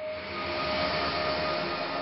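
Intro logo sound effect: a steady, airy whoosh with a faint hum in it that swells gently at first and then holds, accompanying a light glint sweeping across an animated logo.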